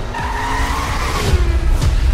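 Car tyres squealing in a skid for about the first second, over a deep low rumble that grows louder in the second half.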